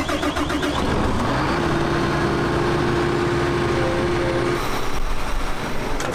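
Large farm-machinery engine running nearby, its pitch rising about a second in and then holding steady before dropping away near the end.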